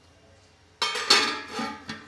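Stainless-steel lid set down on a steel kadai: a sudden metallic clatter about a second in that rings and fades, then a short clink near the end.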